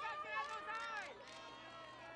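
Photographers calling out in the background, several voices overlapping at once, quieter than the shouting around it.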